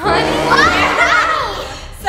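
A girl's voice calling out with its pitch sweeping up and down, fading toward the end.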